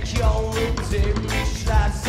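A ska band playing live, the full band with drums keeping a steady beat under pitched melody lines.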